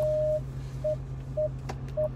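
Electronic beeps at one steady pitch: one longer beep, then three short ones about half a second apart, over a steady low hum.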